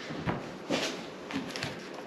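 Light handling noises as hands work a record changer: a few soft clicks and rustles.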